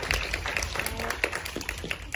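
A round of applause from a small group clapping by hand, many uneven claps that thin out near the end.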